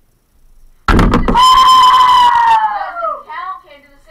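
A sudden loud thump against the hoop the camera sits on, then a child's long, high-pitched yell that falls slowly in pitch over about two seconds.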